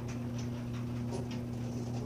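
Room tone: a steady low electrical hum, with a few faint soft hisses.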